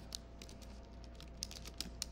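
Computer keyboard typing: a handful of scattered keystrokes as code is entered.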